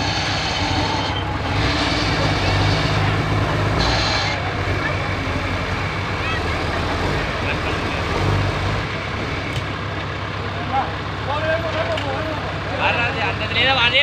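Loaded dump truck's diesel engine running under load as it pulls forward, louder in the first few seconds and again around eight seconds in, then easing off. Men's voices call out near the end.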